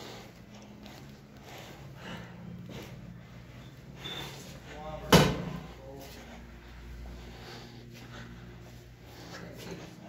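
A door banging shut once about halfway through, a single sharp loud knock with a short ring after it, over a steady low hum from the building.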